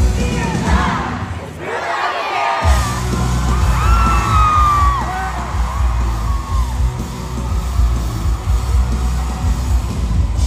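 Live rock band playing loudly in an arena, recorded from among the audience, with crowd screams and whoops on top. About a second and a half in, the bass and drums drop out for about a second, then the full band comes crashing back in.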